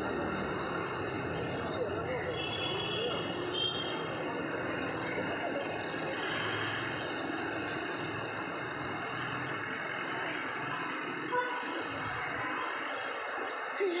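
Town street ambience heard from a footbridge: a steady wash of traffic with indistinct voices, and a brief vehicle horn toot near the end.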